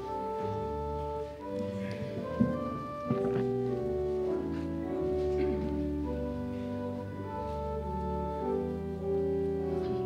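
Organ playing a hymn introduction in slow, sustained chords. A couple of short knocks sound about two and a half and three seconds in.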